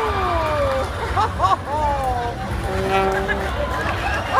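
Amplified male voices over a stage PA making high swooping, sliding vocal sounds, then a single buzzy held note about three seconds in, over a steady low rumble.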